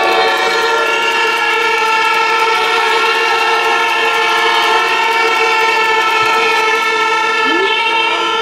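Many horns blown together by a crowd of demonstrators, a loud, dense chord of steady overlapping tones that holds without a break.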